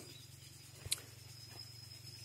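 Quiet background: a faint steady hum with one short click about a second in.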